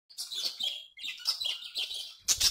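Birds chirping in quick high runs, with a short break about a second in.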